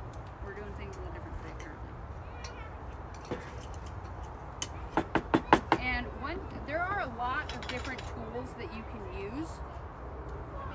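Steady low wind rumble on the microphone, with a quick run of five or six sharp knocks from the work table about five seconds in, followed by quiet voices in the background.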